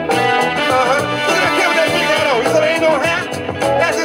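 Early-1970s jazz-funk record played from vinyl: a tight drum and bass groove with guitar, piano and horn section, in a break between the vocal lines.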